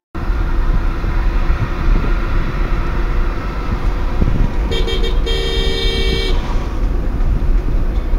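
Steady road and engine noise in a moving car's cabin, with a car horn sounding twice about five seconds in: a short toot, then a longer blast of about a second.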